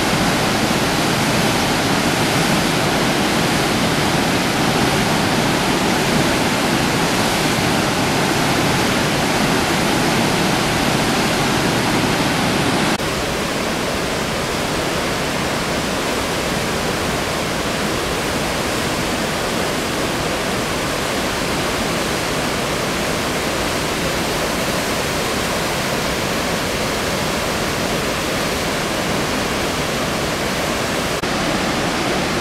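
River rapids and waterfalls: white water pouring over and between rocks in a steady, dense rush. About 13 s in the sound steps down to a slightly quieter, thinner rush as the falls are heard from farther off.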